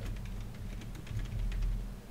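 Computer keyboard typing: a quick, irregular run of light key clicks as a word of code is typed.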